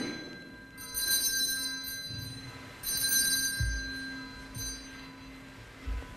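Altar bells rung at the elevation of the chalice during the consecration at Mass: a bright ring about a second in and another about three seconds in, each ringing on and fading, with a fainter shake near five seconds. Two low thumps follow, one in the middle and one at the end.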